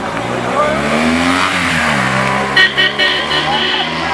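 Escort motorcycle engine passing close by: its pitch climbs, then drops as it goes past, over crowd chatter. Near the end comes a high tone in several short pulses.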